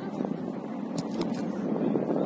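Outdoor football pitch ambience: a steady noisy background with faint distant voices of players, and two sharp knocks about a second in, a quarter second apart.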